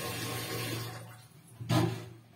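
Water running from a tap that fades out about a second in, followed near the end by a single loud knock.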